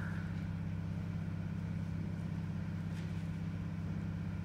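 Steady low hum made of a few even, unchanging tones, with no speech over it.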